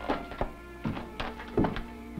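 Footsteps of boots on a wooden porch floor, about five heavy steps with the loudest near the end, over a held chord of background music.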